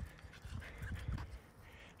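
Quiet, irregular low thuds of footsteps and of a handheld phone being carried on a walk, over faint outdoor background.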